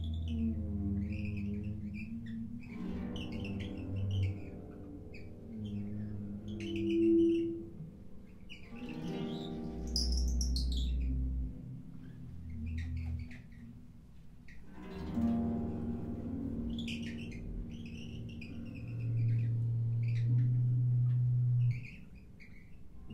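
Improvised music from a trio of piano, concert harp and percussion: long held low tones under pitched notes, with short high wavering sounds scattered through it.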